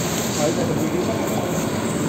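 Steady rushing background noise with faint voices in it.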